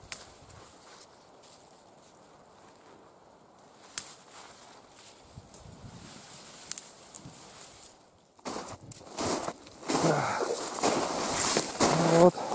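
Birch twigs being broken off: a few faint, sharp snaps. About eight seconds in, a bundle of cut birch twigs starts rustling loudly, handled close up.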